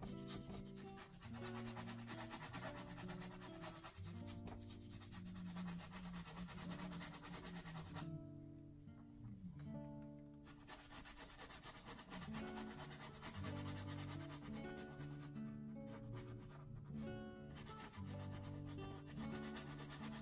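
Soft background music of held notes, with the scratchy rub of a paintbrush scrubbing acrylic paint onto canvas.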